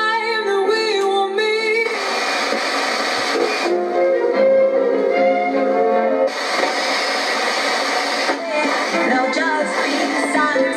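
A song with singing playing on FM radio through the small built-in speakers of a Goodmans Quadro 900 portable TV/radio/cassette set, with a thin sound and no bass.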